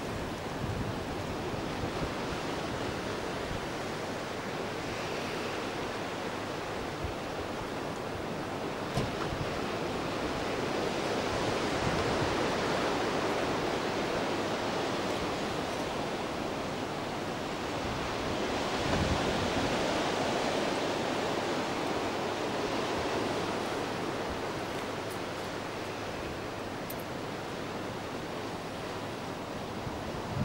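Sea surf breaking on the shore, a steady rushing wash that swells louder twice, about a third and two-thirds of the way through.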